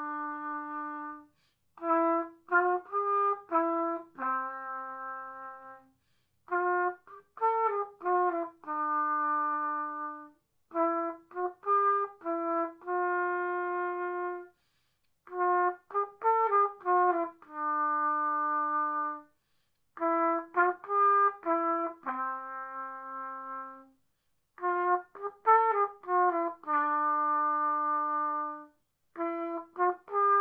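Solo trumpet, played by a beginner, working through a short melody: phrases of several quick notes, each ending on a held note, repeated about every four to five seconds with brief pauses for breath between them.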